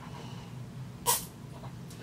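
One short, sharp slurp about a second in, as coffee is sucked up through a Tim Tam biscuit used as a straw.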